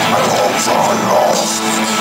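Live doom metal played loud by a full band: distorted guitars, bass and drums with cymbal strokes, under a growled death-grunt vocal.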